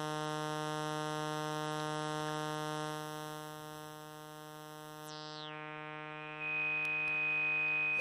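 A steady, bright, buzzy synthesizer note played through a CEM3320-based four-pole voltage-controlled filter. About five seconds in the filter's cutoff is turned down, so the top of the sound sweeps downward and the note grows duller; about a second and a half later the resonance comes up and a strong, high, steady whistling peak rings over the note.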